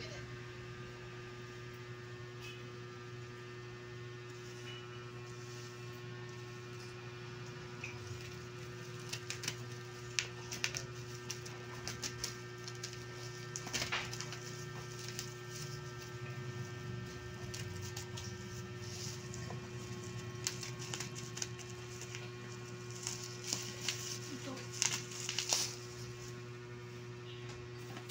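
Steady low electrical hum, with plastic bubble wrap crackling and scissors snipping in scattered bursts from about nine seconds in as a wrapped parcel is cut open.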